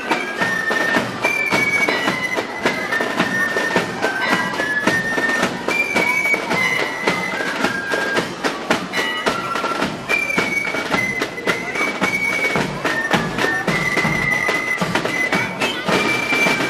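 Pipe band playing a march: a bagpipe melody of held, high notes moving in steps, over steady beating of side drums and a bass drum.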